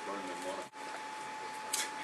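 Faint, indistinct speech over a steady background hiss and a thin constant tone, with a short high hiss near the end.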